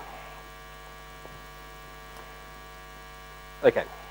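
Steady electrical mains hum in the hall's sound system, a layer of constant tones with no change through the pause. A single spoken word comes near the end.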